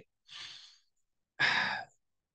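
A man sighing: a soft breath near the start, then a louder breath out about a second and a half in.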